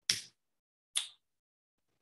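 Two sharp computer keyboard keystrokes, about a second apart.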